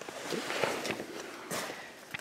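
Rustling and handling noise from hands moving over the seat belt webbing and car seat fabric, with a few soft knocks.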